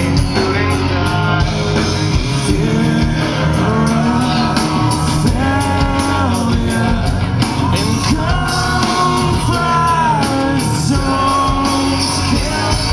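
Live rock band playing: electric guitar, bass and drums, with a singer holding long notes that glide up and down.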